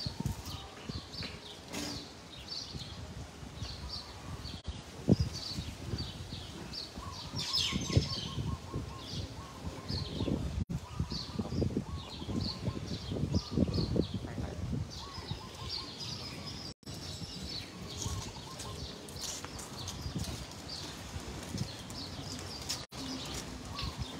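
Small birds chirping in quick short calls, over and over, with irregular low rumbling bumps beneath them.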